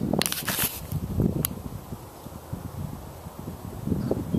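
Handling noise and low wind rumble on a handheld camera's microphone as the camera is swung around, with a brief rustle near the start and a single sharp click about a second and a half in.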